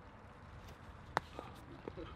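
A thrower's shoes on a concrete discus circle during a spinning throw: one sharp click about a second in, then a few lighter ticks, over faint outdoor background.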